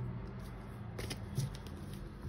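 Tarot cards being handled and set down on a cloth: a few faint, short taps and clicks, mostly in the second half, over a low room hum.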